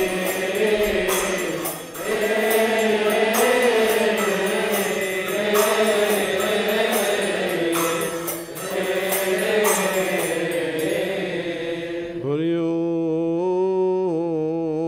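Coptic liturgical hymn chanted by many voices in unison, over a steady beat of sharp metallic strikes typical of Coptic hymn cymbals. About twelve seconds in, the beat stops and a single voice carries on with a long, wavering chanted note.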